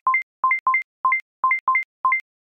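Rapid electronic alert beeps from a live seismic monitor, each a short low note followed by a note an octave higher, about seven pairs at uneven spacing. They come as station readings of ground shaking update.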